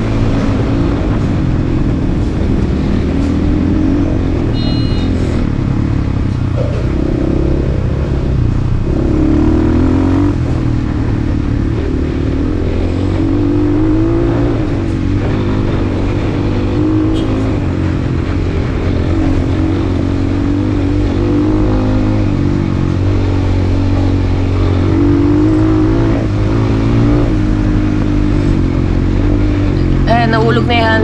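Dirt bike engine running steadily at moderate revs while ridden along in one gear, its pitch rising and falling a little with the throttle, mixed with riding noise.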